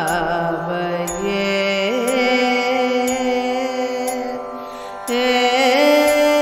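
Carnatic singing in raga Natakurunji: a female voice draws out long, ornamented notes that slide and waver (gamakas) over a steady drone. The music dips briefly, then a new phrase comes in louder about five seconds in.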